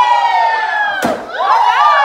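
Children yelling in long, high-pitched shouts that hold and then drop, around a piñata being hit, with a sharp whack about a second in.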